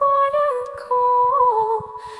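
A high voice humming a slow wordless melody, two short phrases that each step down in pitch, part of a background song.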